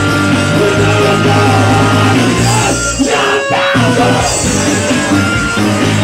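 Live punk rock band playing loudly, with the music dropping out briefly about halfway through before coming back in.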